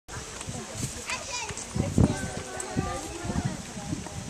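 Background chatter of several people's voices, children's among them, talking at once and not close to the microphone.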